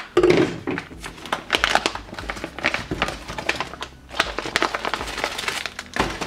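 Thin plastic ration pouch crinkling and rustling as hands work it open and pull out a clear zip-lock bag of packets. It is loudest just at the start, then keeps up as a run of irregular crackles.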